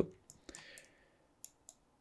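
Two faint, short clicks a quarter of a second apart, about a second and a half in, from a computer mouse being worked.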